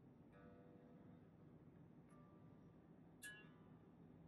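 Faint plucked notes on an electric bass string, checked for intonation against the reference note. One note starts about a third of a second in, a fainter one around two seconds, and a sharper, brighter pluck comes a little after three seconds.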